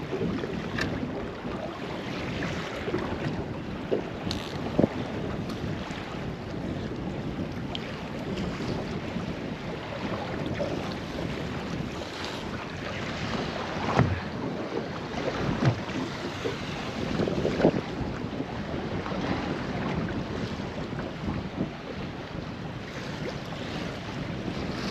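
Wind buffeting the microphone over the wash of choppy sea against a small boat's hull, with a few brief louder slaps.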